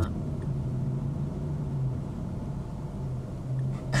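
Car interior noise while driving: a steady low rumble of engine and road with a faint constant hum, heard from inside the cabin.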